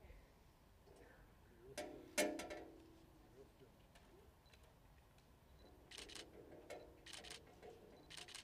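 Quiet room, broken by a sharp metallic clank with a short ring about two seconds in as the balance-beam weigh-in scale is adjusted. Near the end come several quick runs of camera shutter clicks.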